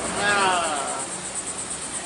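A fast, high-pitched pulsing chirp runs steadily in the background. A short voice-like sound falls in pitch in the first second.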